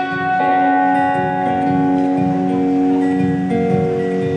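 An acoustic guitar and an electric guitar play live together in a slow instrumental intro, with long ringing notes and chords changing every second or so.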